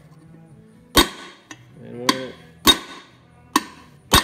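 Hammer striking a steel coil-thread rod that drives a plate against a wheel seal, seating the seal evenly into a 15k Dexter trailer axle hub. Three sharp metallic strikes at uneven spacing, each with a short ringing tail.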